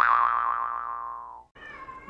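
A cartoon 'boing' sound effect: one sudden springy twang that slowly sinks in pitch and fades away over about a second and a half. Near the end a cat starts to meow.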